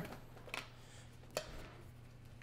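Faint handling noise from a Bass Buggie double-bass wheel and its straps being untangled: two light clicks about a second apart.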